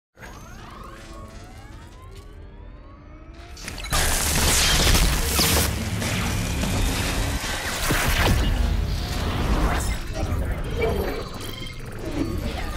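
Sci-fi sound design of an electric brain-shock device: gliding electronic whine tones as it charges, then about four seconds in a sudden loud burst of electric crackling and zapping over a deep rumble that carries on to the end.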